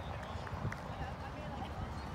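Outdoor ambience picked up by a phone microphone: a steady low rumble with faint, indistinct voices in the distance.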